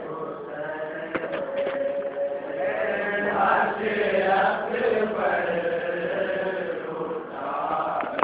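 Male voices chanting a nauha, a Shia mourning lament in Urdu, in a continuous melodic line. A few sharp smacks are heard about a second in.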